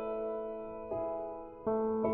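Quiet, slow piano passage: sustained chords fade away, with new notes struck about a second in and again near the end.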